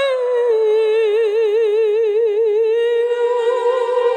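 A woman's wordless vocal holding one long note with a wide, even vibrato. The note glides down at the start and lifts slightly about three seconds in, as a soft low accompaniment tone comes in underneath.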